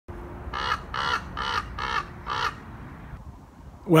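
A crow cawing five times in a quick, even series, about two calls a second.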